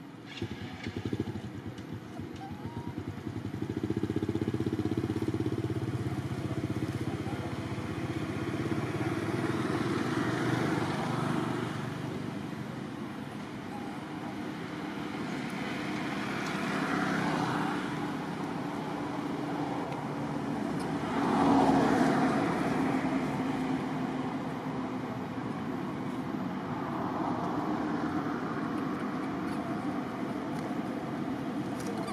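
Motor vehicle engines running steadily, swelling louder and fading several times as vehicles pass.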